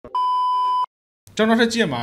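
A single steady electronic beep lasting under a second, a censor bleep over an edited-out moment, followed by a brief silence; a man's speech starts again a little past halfway.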